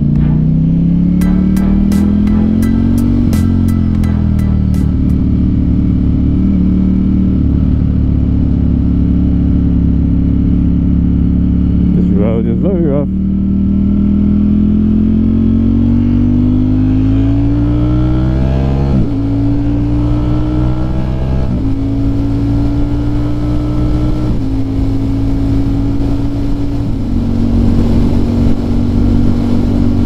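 Ducati Streetfighter V4S's V4 engine pulling hard through the gears, its pitch climbing in each gear and dropping sharply at several upshifts, with wind rushing over the rider's microphone.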